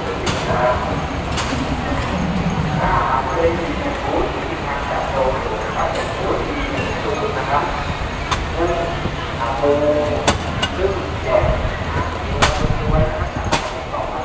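Indistinct chatter of many shoppers and stallholders, with voices overlapping, and a few sharp clicks or clacks now and then.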